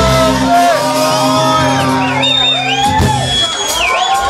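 A live folk band ending a song: the full band with drums and double bass stops about half a second in, a last chord rings on while the crowd whoops and shouts, and a final sharp hit comes about three seconds in.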